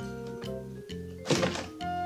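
Background music, and about a second and a half in a single dull plastic thunk as the lower front cover panel of a Panasonic twin-tub washing machine is pulled up and off.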